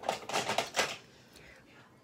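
A quick clatter of small hard objects being handled, with several sharp clicks in the first second and then quiet.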